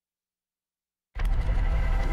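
Dead silence for about a second, then a TV news segment-opening sting cuts in suddenly with a heavy low rumble under an animated title graphic.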